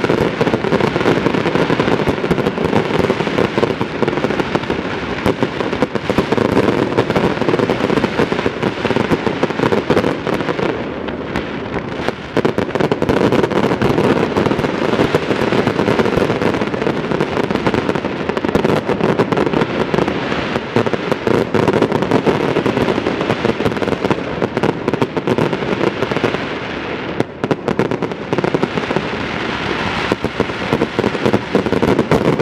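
Fireworks display: a dense, continuous barrage of aerial shells bursting, rapid bangs and crackling with no break, easing slightly about a third of the way through and again near the end.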